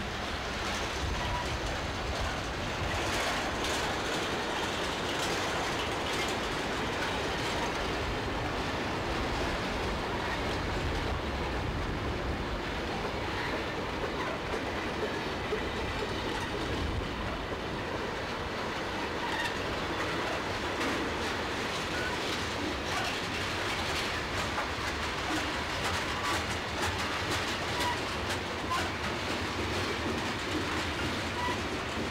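Freight train cars rolling steadily past: a continuous rumble of steel wheels on rail, with irregular clicks and clanks as the wheels cross rail joints.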